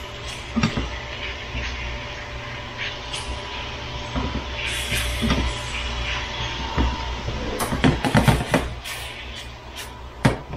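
Chicken pieces frying in a skillet, stirred with a silicone spatula: scraping and clicking against the pan, with a quick run of knocks near the end, over a steady low hum.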